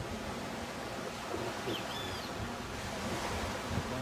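Steady low rumble of wind on the microphone, with a few faint high chirps about halfway through.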